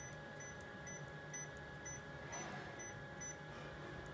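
Faint steady electrical hum of a Kyocera TASKalfa 5551ci multifunction copier standing idle, with a very faint high tick repeating about twice a second.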